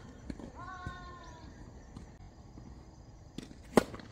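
A tennis ball struck hard by a racket near the end, a sharp crack and the loudest sound, with fainter ball hits and bounces before it. About half a second in comes a short high-pitched call lasting about a second.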